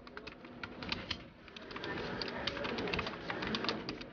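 Typing on a computer keyboard: a quick, irregular run of key clicks that thins out briefly about a second and a half in, then picks up again.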